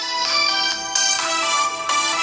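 Instrumental music played through a smartphone's rear loudspeaker (Alcatel A3 XL), a melody of changing notes with thin sound and little bass.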